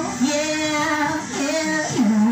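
A woman singing into a corded handheld microphone, holding notes and sliding between them, over recorded backing music.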